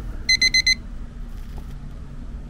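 Four rapid, high-pitched electronic beeps in quick succession, in the pattern of a digital alarm clock, over a steady low rumble.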